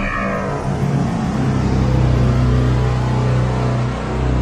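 Advertising sound-design sting: a steady low rumbling drone that builds over the first couple of seconds under a noisy wash, with higher tones fading out at the start.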